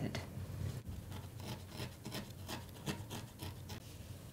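Soft, irregular rubbing and scratchy rustling of core wool being squeezed and wrapped by hand around a small wire bird armature.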